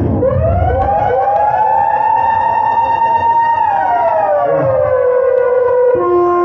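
Siren sound effect played over a concert PA: a tone sweeps up just after the start, holds for a few seconds, then slides back down, with echoing repeats trailing each sweep.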